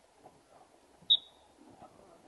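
Soft, irregular taps of footballs being dribbled and players' feet on artificial turf. About a second in, a single short, loud, high-pitched chirp cuts across them.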